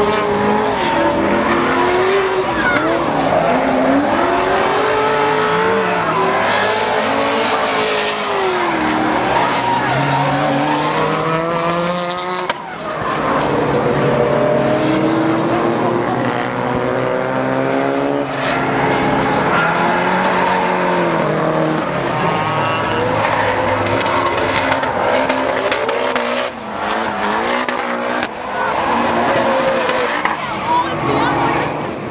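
Drift cars sliding through corners, engines revving up and down over and over with tyre squeal and skidding. There is a short drop in loudness about twelve seconds in.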